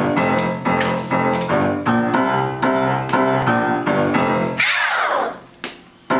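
Upright piano playing an intro of rhythmic chords, a few strikes a second. Near the end a fast run sweeps down the keys, a downward glissando, and the chords then start again.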